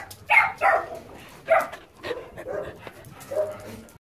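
Dogs barking: several short, separate barks spread over a few seconds.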